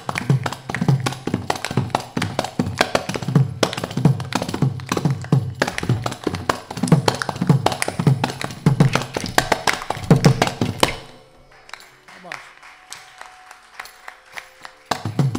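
Carnatic percussion ensemble playing a fast, dense rhythm of hand-drum strokes, with low drum tones that bend downward in pitch. The drumming stops about eleven seconds in, leaving only a few soft taps.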